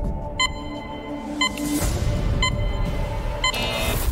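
Game-show countdown timer beeping once a second, four short high beeps as the answer clock runs out, over a tense music bed, with a swell of noise near the end.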